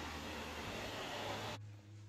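Faint, steady background hiss that drops off suddenly about one and a half seconds in, leaving a quieter low hum.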